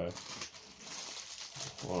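A small clear plastic bag crinkling as a hand handles it, a rustling with small crackles.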